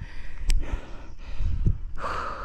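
A tired cyclist breathing out heavily between remarks, out of breath after a long climb, over a low rumble of wind on the microphone; a sharp click about half a second in.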